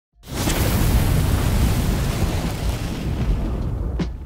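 Logo-intro sound effect: a sudden booming rush of noise with a deep rumble, its hiss thinning out toward the end.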